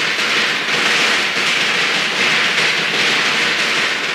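Loud, steady rushing noise that starts suddenly out of silence, a sound effect at the opening of a song track.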